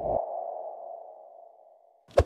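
Logo sting sound effect: a brief low thump, then a single ping-like electronic tone that fades away over about two seconds.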